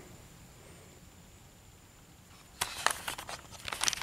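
Quiet room tone, then from about two and a half seconds in a run of rustles, clicks and knocks from the camera being handled and swung round.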